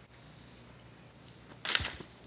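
Quiet room tone while a smoke is lit, then near the end one short, loud puff of breath as the smoke is blown out.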